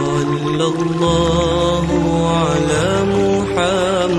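A selawat, an Islamic devotional song in praise of the Prophet, sung in a long, melismatic line with wavering vibrato over sustained low accompaniment notes. The low notes change pitch about a second in and again near three seconds.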